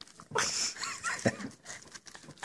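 A cockapoo biting and chewing kernels off a corn on the cob: a loud bite about a third of a second in, then quieter chewing clicks.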